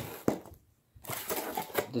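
Cut cardboard pieces being handled on the floor: a single knock about a quarter second in, then after a short silence, light scraping and tapping of cardboard.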